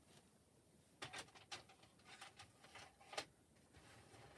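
Near silence: room tone with a few faint clicks and taps, the loudest about three seconds in.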